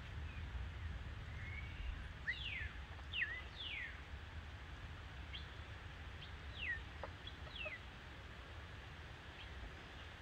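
Birds calling: a string of short, sharply falling whistled notes, several close together early on and a few more spaced out later, over a low steady rumble.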